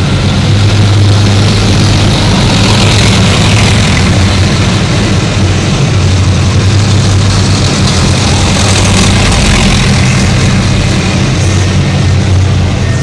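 Diesel engines of a column of tracked armoured infantry fighting vehicles driving past, a loud, steady low drone with a hum that holds its pitch. Heard from inside a car.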